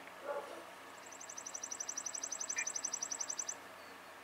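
A high, rapid trill of about a dozen notes a second, starting about a second in, growing louder and cutting off abruptly after about two and a half seconds, over faint room hum.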